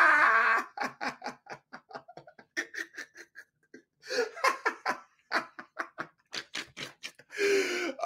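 A man laughing hard: a long run of quick, repeated bursts of laughter that drops away briefly about three and a half seconds in, then picks up again.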